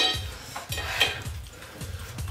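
Chopsticks clicking against ceramic plates of noodles, with a sharp click about a second in, over faint background music.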